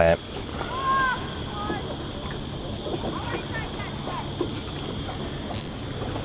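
Steady outdoor background with a few short chirps about a second in. Faint small clicks of steel steering cable as it is threaded by hand through a turnbuckle and locking clamp.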